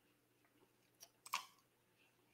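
Near silence with two sharp clicks at a computer, about a second in, the second louder.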